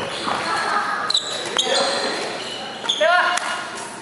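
Sneaker soles squeaking on a hardwood gym floor: several short, high squeaks and a rising squeak about three seconds in. There are scattered light knocks and voices, echoing in a large hall.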